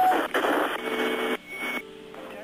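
Two-way fire dispatch radio transmission: a harsh static hiss with a low hum that cuts off sharply about a second and a half in, followed by a short high beep.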